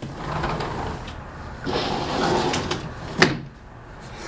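A sliding patio door being slid open: two stretches of rolling scrape, then a sharp clack about three seconds in.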